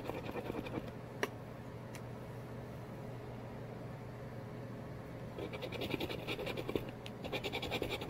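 A coin scraping the coating off a scratch-off lottery ticket in quick, rapid strokes. The scraping pauses for a few seconds in the middle, with a click or two, then starts again.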